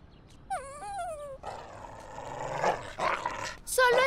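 Cartoon poodle's voice: a short whining call about half a second in, followed by a longer rough, noisy vocalising, as of a frightened little dog.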